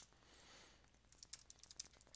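Faint keystrokes on a computer keyboard: one click at the start, then a few light taps in the second half, otherwise near silence.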